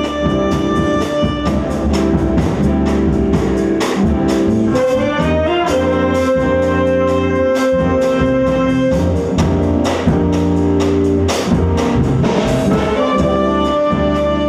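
Live jazz band playing: saxophone and trumpet holding long notes over drums, bass, guitar and piano, with a quick rising run of notes about five seconds in.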